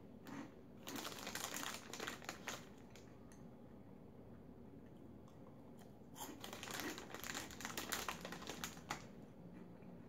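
Crisp crunching of cornmeal cheese puffs being chewed, in two bouts: one starting about a second in and one a little after six seconds, each lasting two to three seconds.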